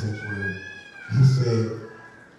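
A high-pitched, drawn-out cry lasting about a second and a half, rising a little and then falling, with a man's voice briefly under it near the end.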